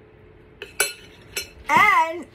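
A metal spoon clinks a few times against dishware as whipped topping is scooped and dropped onto a glass mug of hot cocoa. Near the end a woman's voice begins.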